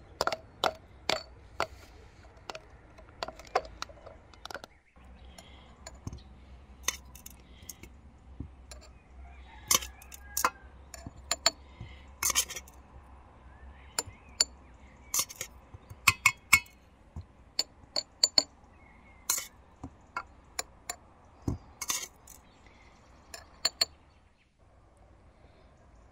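Glass canning jars and a metal spoon clinking as chopped garlic and chanterelle mushrooms are packed into the jars. The clinks are many, sharp and irregular, a few of them ringing briefly, with a brief break about five seconds in.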